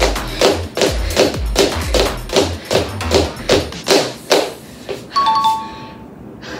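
Rhythmic footfalls of someone doing high knees on a bedroom floor, about three landings a second, each a thud that stops about four and a half seconds in. Near the end a two-note ding-dong chime sounds, the higher note first.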